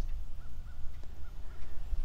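A bird calling faintly in short repeated notes, about three a second, over a steady low rumble on the microphone.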